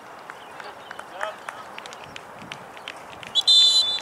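Referee's whistle blown once near the end, a short shrill blast of about half a second. Before it there are distant shouts from the field.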